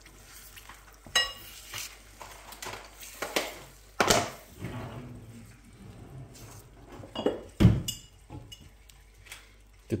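A spatula stirring and scraping beaten eggs in a small frying pan as they begin to scramble, with irregular scrapes and light clinks against the pan. There is a ringing clink about a second in, and one heavier thump, the loudest sound, shortly before the end.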